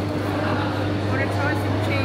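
Indistinct chatter of shoppers in a busy indoor market hall over a steady low hum.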